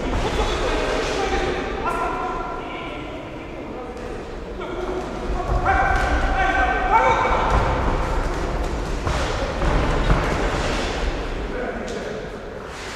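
Indistinct voices in a large hall, loudest a little past the middle, over a steady background din, with a few thuds.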